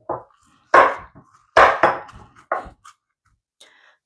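Wooden pestle pounding and grinding culantro and garlic in a mortar: four strokes with short gaps between them, the middle two the loudest.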